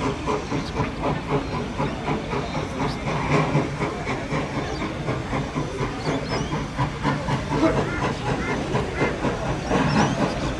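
Queensland Rail C17-class steam locomotive No. 971 working as it approaches: a continuous stream of exhaust beats with hissing steam.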